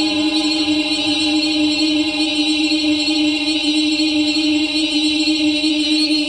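Soundtrack of a video artwork: a voice-like, chant-like electronic drone holding one low pitch steady with many overtones, under a dense, bright upper layer.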